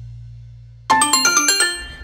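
The song's final low bass note fades away, then, about a second in, a short bright jingle of five or six quick chiming notes plays: the channel's logo sting.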